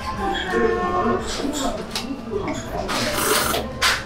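A person slurping cold soba noodles out of a dipping cup, a short noisy suck about three seconds in, lasting about half a second, with a second brief one just before the end.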